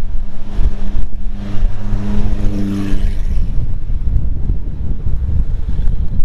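Porsche 911 GT3's flat-six engine running steadily in slow traffic, heard from the cabin over a low road and wind rumble. Its drone fades after about three seconds, leaving the rumble.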